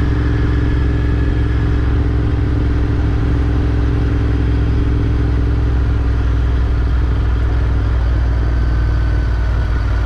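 Royal Enfield GT 650's parallel-twin engine running steadily at a road cruise, with wind noise over it.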